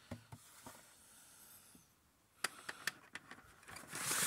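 Faint handling noise: a scatter of soft clicks and taps in the second half over a quiet room hiss.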